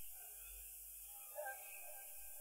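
Very quiet pause between verses of a solo Quran recitation: only a faint steady hiss, with a small faint sound about one and a half seconds in.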